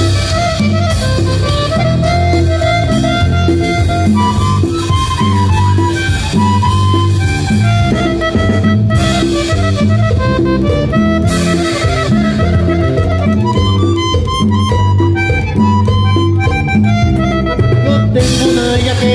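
A miniature button accordion playing a fast norteño melody, its reedy, high-pitched voice picked up by a microphone, over an electric bass keeping a steady, rhythmic bass line.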